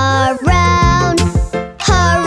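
Children's song: a sung line over a bouncy backing track with bass and drum beats.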